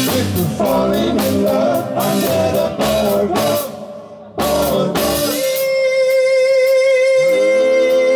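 Live rock 'n' roll band playing: drum kit, guitars and a singing voice. The music drops out briefly just before halfway, then comes back as a long held note, with lower notes joining near the end.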